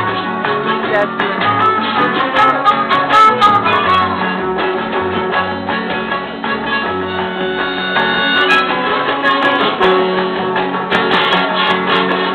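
Acoustic guitar strummed in a quick, steady rhythm, with low bass notes moving beneath it, played live by a small band.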